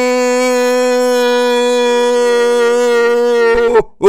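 A man holding a long 'siuuu' shout, the Cristiano Ronaldo goal-celebration cry, on one steady pitch. It wavers and breaks off near the end, and a short rising-and-falling call follows.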